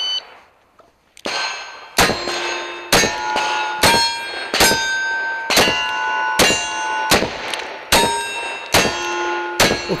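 A shot-timer beep, then .45 Colt single-action revolvers fired about ten times, roughly one shot a second, each shot followed by the ring of a struck steel target.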